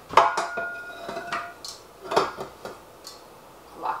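A mixing bowl being set onto a KitchenAid stand mixer and fitted in place: one loud clank just after the start that rings on for about a second, then several lighter knocks as it is locked in.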